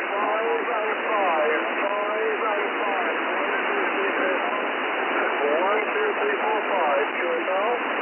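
Shortwave receiver hiss and static on the 40 m band, heard through a narrow lower-sideband filter, with a weak single-sideband voice coming faintly through the noise. It is a distant station barely readable under heavy interference (QRM).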